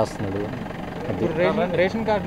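A man speaking Telugu into a handheld microphone, his voice dipping in level for a moment partway through before picking up again.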